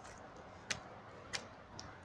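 Footsteps climbing concrete steps: the shoes click sharply on the stone about every two-thirds of a second, over a faint background.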